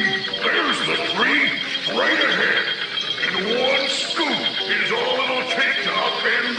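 Cartoon soundtrack: background music with repeated wordless character vocalizations, short calls that each rise and fall in pitch.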